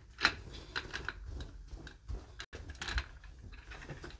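Scattered light clicks, knocks and rustles from a dress form and garments being handled and moved. The sound cuts out briefly about halfway through.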